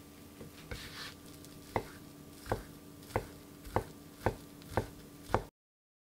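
Kitchen knife chopping a sheet of deep-fried tofu (aburaage) on a wooden cutting board. After a brief rustle of handling, about seven sharp strikes come roughly every half second, growing a little quicker, then the sound cuts off suddenly.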